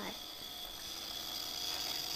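Single-serve coffee maker brewing: its pump runs with a steady whir and a thin high whine, slowly growing louder, as coffee streams into the mug.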